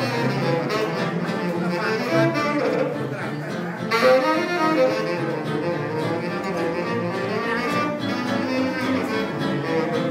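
Live small-group jazz: a saxophone plays the lead over a walking double bass, with a strong accent about four seconds in.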